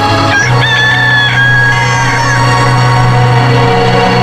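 A rooster crows once over music with a low held note. The crow starts about half a second in and lasts about two seconds, rising, holding, then dropping away.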